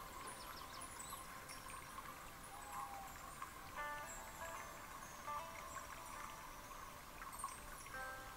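Faint, slow background music of soft chime-like notes, with a new group of notes sounding every second or two.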